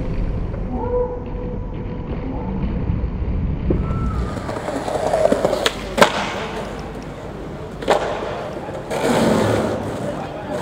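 Skateboard wheels rolling over stone plaza tiles, with several sharp clacks of the board striking the ground, the loudest about six seconds in. The rolling swells louder again near the end.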